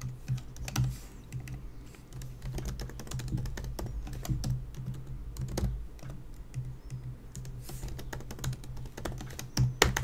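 Typing on a computer keyboard: quick, irregular key clicks in short runs, over a low steady hum.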